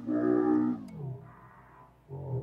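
A man's voice holding one drawn-out spoken word for about a second, its pitch falling as it ends.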